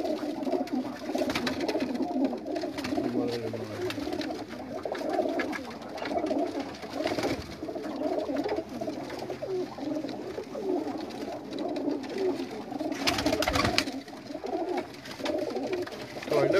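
Many pigeons cooing together in a loft, a continuous overlapping chorus of low calls.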